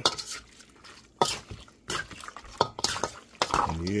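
A utensil scraping and clattering against a metal pot as chunks of seasoned pork are stirred, in irregular strokes a second or so apart.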